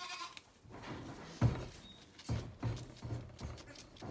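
Zwartbles lambs sucking hard at a feeding bottle: a run of short, low gulping and bumping sounds, about three a second in the second half, the loudest about a second and a half in.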